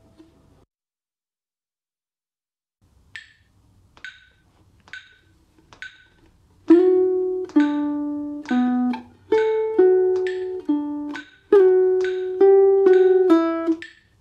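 A metronome clicks four times, a little under a second apart, as a count-in. Then a guitar plays a phrase of plucked single notes and chords in time, each ringing for about a second, with the pitch moving up and down.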